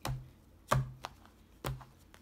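Playing cards and a card deck set down on a table: three sharp taps, roughly a second apart, with a fainter click between.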